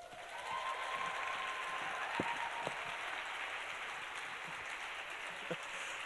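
An audience applauding, starting abruptly and holding steady.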